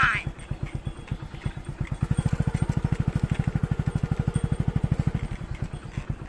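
A small single-cylinder engine running steadily with a rapid, even knock of about a dozen beats a second; it gets louder about two seconds in, as if coming closer.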